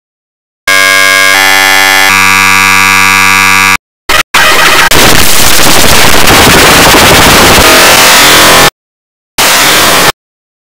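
Heavily distorted, clipped electronic audio: a loud buzzing tone for about three seconds, then after a brief break a harsh, dense noise for about four seconds, and a short burst near the end, each block starting and stopping abruptly with silence between.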